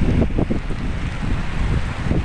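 Strong wind buffeting the microphone in a low, uneven rumble over the steady hiss of heavy rain.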